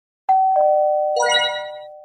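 Three-note chime for a channel intro logo: two clean ringing tones, the second lower than the first, then a brighter third note, all ringing on and slowly fading out.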